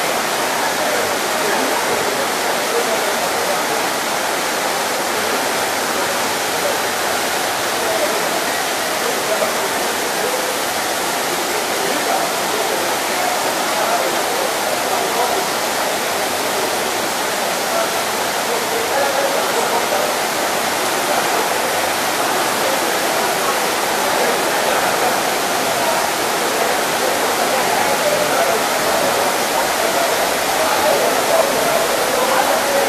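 Heavy tropical downpour: steady rain with water gushing off the roof in a thick stream from a spout.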